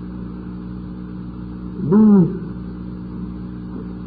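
Steady low hum with a faint hiss: the background noise of an old audiocassette lecture recording, heard in a pause of a man's speech. He says one drawn-out word about two seconds in.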